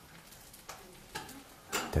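Quiet room tone in a small kitchen with a faint hiss and a couple of soft clicks, then a man's voice begins near the end.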